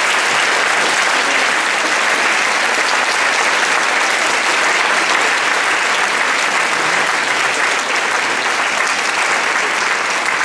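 Audience applauding, dense steady clapping.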